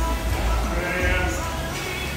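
Loud background music with a heavy bass line, and a wavering voice rising over it around the middle.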